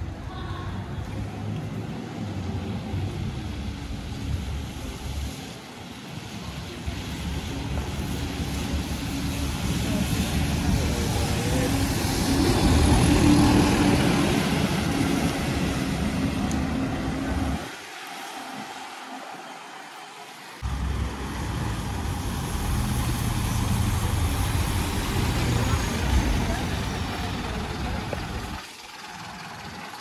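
Diesel bus engines running at the kerbside, the rumble building to a peak about halfway through. The sound drops away abruptly for about three seconds, then the engines are heard again.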